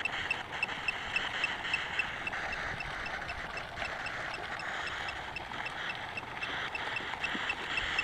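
Night insects, likely crickets, chirping: short high chirps repeat about twice a second in a steady rhythm over a constant hiss of insect chorus.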